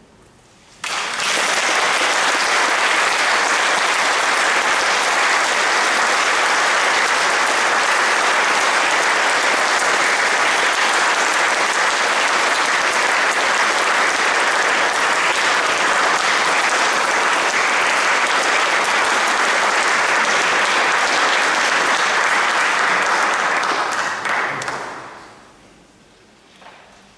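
Audience applauding, breaking out suddenly about a second in and dying away near the end.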